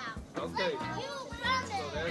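Children talking and calling out over one another, high-pitched, with music playing underneath.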